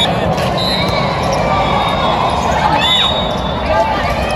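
Indoor volleyball play: the ball is served and struck in a rally, with sharp ball hits over a steady din of players' and spectators' voices, and some high held tones above it.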